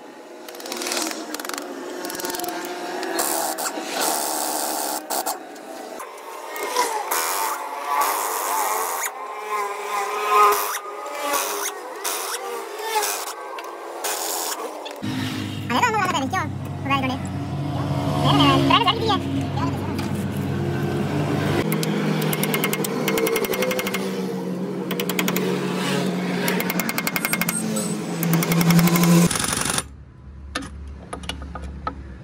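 Pneumatic impact wrench rattling in repeated bursts as it runs nuts off a truck's rear axle hub and differential. Voices and music run over it, and the sound changes abruptly about halfway through.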